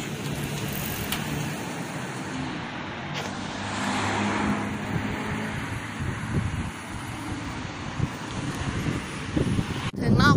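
Street traffic at an intersection: car engines running and cars passing close by, with one passing loudest about four seconds in.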